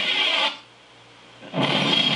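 Television sound played through a TV set: a voice trails off, a brief near-pause follows, and then a loud show bumper of music and sound effects starts about one and a half seconds in.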